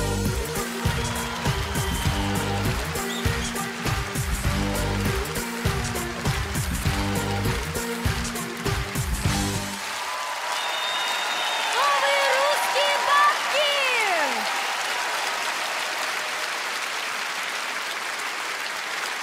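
Stage music with a heavy bass beat that cuts off about ten seconds in. Audience applause follows, with a few voices calling out over it.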